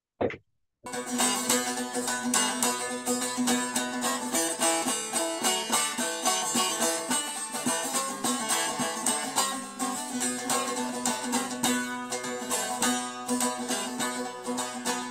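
Bağlama (long-necked Turkish saz) played solo, starting about a second in: fast strummed and plucked notes over a steady low drone note. It is the instrumental introduction to an Alevi deyiş, before the singing comes in.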